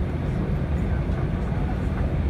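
Steady low rumble inside the cabin of an Airbus A319 rolling slowly on the ground after landing.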